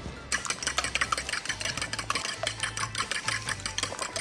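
Wire balloon whisk beating rapidly against the side of a ceramic mixing bowl, in quick even strokes, several a second, starting a moment in.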